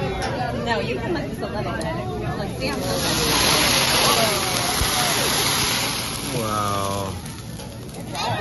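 A flame flaring up on a teppanyaki griddle: a steady rush of hiss and sizzle that swells about three seconds in and holds for about three seconds, over diners' chatter.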